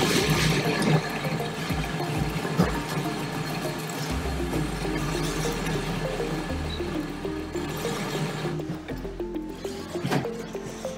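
WMF 1100 S automatic coffee machine running through a mocha cycle, a steady mechanical and liquid sound with a low rumble that cuts in and out, under background music.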